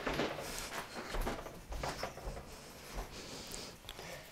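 Faint, irregular scraping and light taps of a spoon scooping solid vegetable shortening out of a can into a glass measuring cup.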